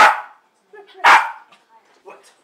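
A Basenji barking twice, sharp and loud, about a second apart, at a closed door to get it opened.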